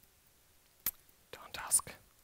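A man whispering or muttering briefly under his breath, over about the last second. A single sharp click comes just before.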